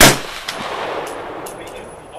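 A single gunshot from a 300 Blackout pistol firing subsonic Sellier & Bellot ammunition, sharp and loud, with a short echoing tail. A much fainter shot follows about half a second later.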